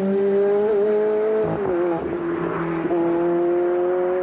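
Ferrari F430's V8 engine running under way with a steady, pitched note that briefly dips in pitch about a second and a half in, then holds steady again.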